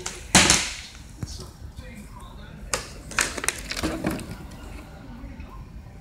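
A partly filled plastic water bottle, thrown in a bottle flip, hitting a tile floor hard about a third of a second in. A lighter knock follows a second later, then a few quicker knocks and scuffs as the bottle is picked up and handled.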